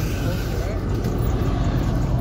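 Steady low outdoor rumble with faint voices in the background.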